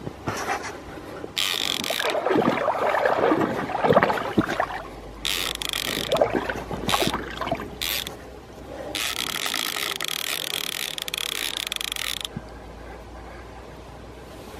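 A spinning reel's drag buzzing in several bursts as a hooked Russian sturgeon pulls line off. The longest burst lasts about three seconds near the end, with lower mechanical rattling from the reel and rod between the bursts.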